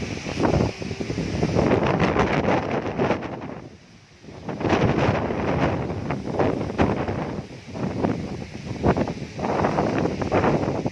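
Strong dust-storm wind gusting hard over the phone's microphone, buffeting it in surges with a short lull about four seconds in.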